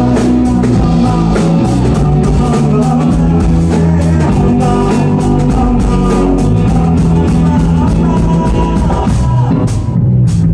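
Live band playing loud rock-style music: electric guitar and a steady drum-kit beat, with singing.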